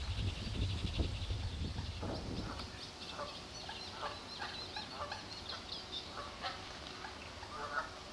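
Wild birds calling: a series of short calls repeated about every half second to second, with higher chirping over them. A low rumble is heard in the first couple of seconds.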